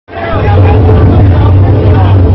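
Voices talking over a loud, steady low rumble.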